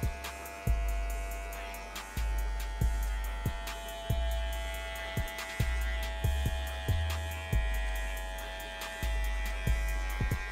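A DingLing hair clipper fitted with a guard comb buzzing steadily as it cuts short hair through a skin fade, with background music underneath.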